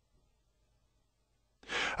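Silence between narrated sentences, then a faint in-breath by the narrator near the end, just before he speaks again.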